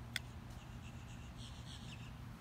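A single sharp click just after the start, then a small bird chirping in a fast run of short high notes, faint against a low steady background rumble.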